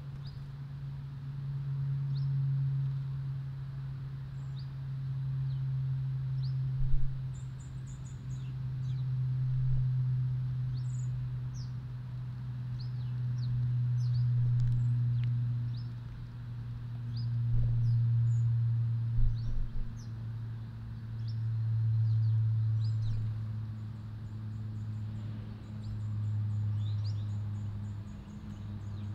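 Small garden birds giving scattered thin, high chirps and a couple of brief high trills over a loud low drone that swells and fades about every four seconds. A few short knocks stand out partway through.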